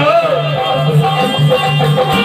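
Live bhajan group music: a short repeating instrumental melody over a regular drum pattern, with a sung phrase gliding off right at the start.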